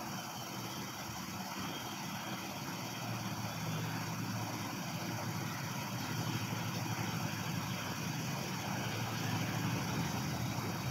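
Steady low rumble of a vehicle engine running in the background, growing slightly louder toward the end.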